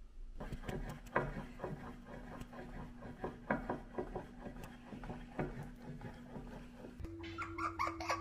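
Faint kitchen handling sounds while making dumplings: scattered light clicks and taps over a steady low hum. Near the end the hum shifts to a slightly higher pitch.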